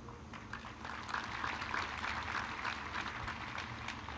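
Audience applauding: a dense patter of many hands clapping that starts about a third of a second in and builds over the first second.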